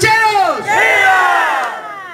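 A man shouting a drawn-out rallying cry into a microphone. One shout ends about half a second in, then a second is held for over a second, its pitch slowly falling.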